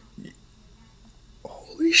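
A quiet pause with faint room tone, then a voice starts speaking about one and a half seconds in.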